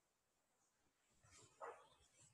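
Near silence: room tone, with one faint short sound near the end.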